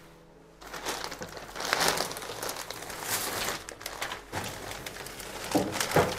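Plastic shopping bags rustling and crinkling as they are handled and unpacked, starting about half a second in.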